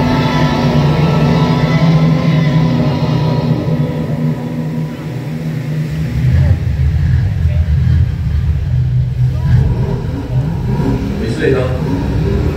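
Show soundtrack over large outdoor loudspeakers: film dialogue and music over a deep low rumble that swells about halfway through.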